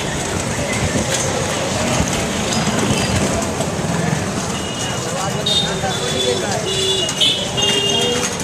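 Busy street traffic heard from a moving cycle rickshaw: crowd voices and motor vehicles. In the second half, vehicle horns honk several times in short, held blasts.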